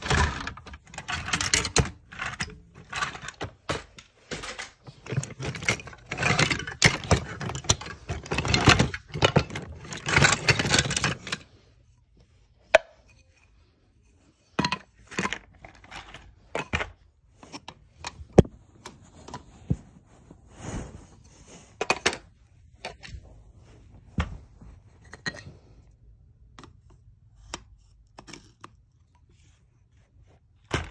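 Wooden toy train track pieces knocking and clattering together as they are handled. The clatter is dense for the first eleven seconds or so, then thins to scattered single knocks.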